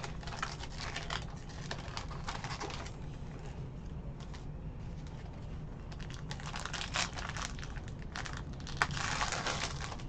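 Foil trading-card pack wrapper crinkling as it is handled and worked open, a run of small crackles that gets busier over the last few seconds.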